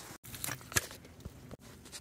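Low background noise with a soft knock about three-quarters of a second in and a few fainter ticks; the sound cuts out completely twice for an instant.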